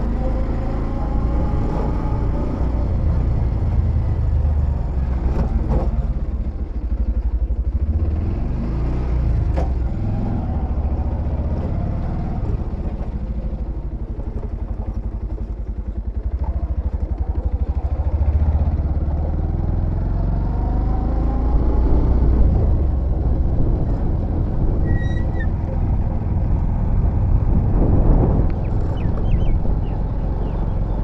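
Bajaj Pulsar 125's single-cylinder engine running as the motorcycle is ridden at low speed, its pitch rising and falling with the throttle over a steady low rumble.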